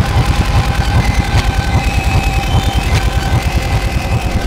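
Helicopter rotor and engine noise: a fast low thudding with a steady whine above it.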